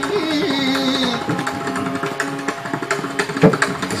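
Carnatic concert music: a held, gliding melodic note from voice and violin fades about a second in, leaving quick mridangam and ghatam strokes, with one heavy deep stroke near the end.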